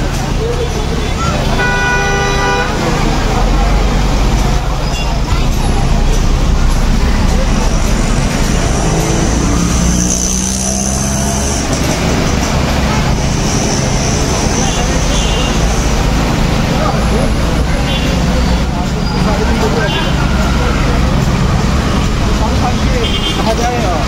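Busy street traffic with the voices of a crowd, and a vehicle horn honking for about a second near the start.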